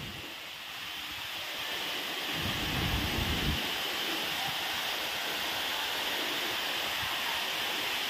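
Tall waterfall pouring down a rock face into a pool, a steady rush of falling water that grows a little louder over the first few seconds. A brief low rumble sounds about two and a half seconds in.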